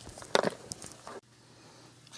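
Knocks and handling noise of a camera and microphone falling after the mic cord is dropped, with one louder knock about a third of a second in. The sound then cuts off suddenly a little after a second in as the power goes off.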